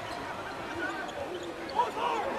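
A basketball being dribbled on a hardwood court, heard faintly as court sound.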